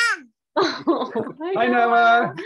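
A toddler's high-pitched shout, falling in pitch and ending just after the start, followed by adults' wordless vocal reactions, one drawn out near the end.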